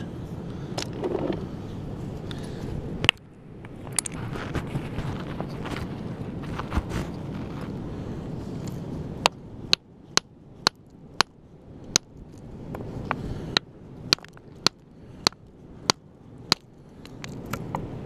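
Hammer blows on a stone concretion, cracking it open to look for a fossil inside. A few scattered knocks and a single sharp strike come first. From about halfway there is a quick run of about a dozen sharp blows, roughly two a second, which stops shortly before the end.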